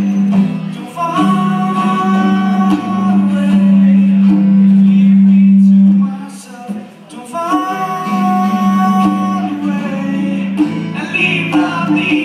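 Live acoustic guitars strummed behind singing, a song performed through the hall's PA. Two long held sung notes, with a brief quieter spell just past the middle.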